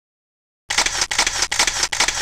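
Silence, then from under a second in a rapid run of sharp camera shutter clicks, about half a dozen, from press photographers' cameras.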